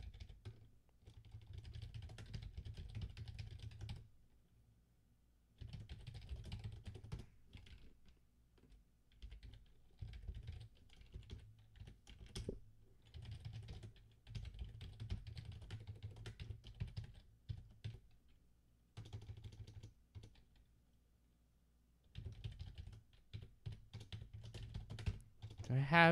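Typing on a computer keyboard in quick runs of key clicks, broken by pauses of a second or two.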